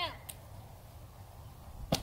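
A padded egg package, dropped from a house roof, lands on the ground with one sharp thud near the end. A child's voice trails off at the start.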